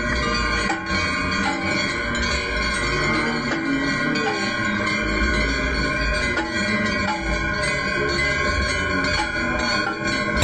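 Aarti bells ringing without a break, several steady ringing tones overlapping.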